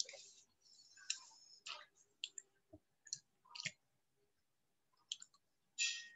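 Faint, scattered short clicks and brief hisses, about a dozen irregular ones, with a slightly longer hiss just before the end.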